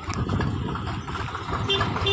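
Farm tractor's diesel engine running with a low, rapid chugging as it approaches towing a trailer.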